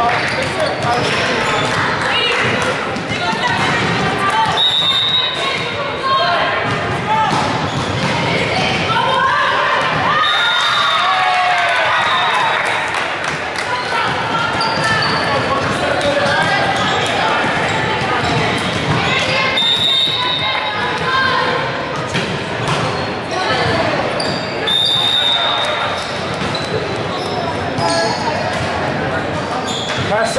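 Volleyball match sounds in a large gym: the ball being bounced and hit, with players and spectators calling out. Everything echoes in the hall, and there are a few brief high-pitched squeaks.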